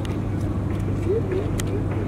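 A motor running with a steady low hum, under faint distant voices and a few short, sharp clicks.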